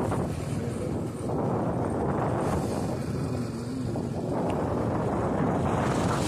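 Motor vehicle engine running steadily at road speed, with wind rushing over the microphone as it rides along.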